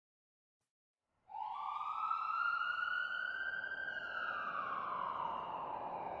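Ambulance siren wailing, starting suddenly about a second in: one slow tone that rises, falls and begins to rise again near the end.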